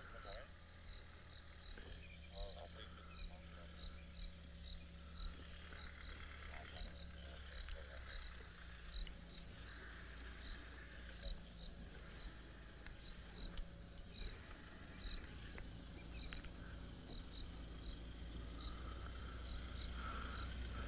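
Faint, evenly repeated high chirps, about three every two seconds, from a small calling animal, over a low steady hum.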